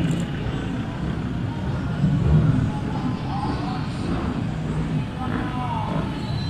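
Land Rover Defender 4x4s driving slowly past in a convoy, their engines running at low speed, loudest as one passes close about two seconds in.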